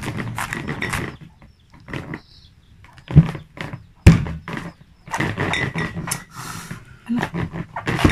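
Large kitchen knife cutting through a raw cabbage head on a plastic cutting board: crisp crunching and cracking of the leaves in spells, with two sharp knocks about three and four seconds in.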